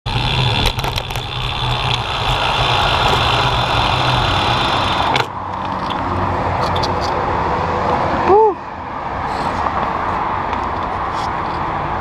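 Steady traffic noise from a multi-lane highway below. For the first five seconds it is mixed with the wind and tyre noise of a bicycle being ridden, which cuts off suddenly as the bike stops. About eight seconds in there is one brief high chirp-like tone, the loudest moment.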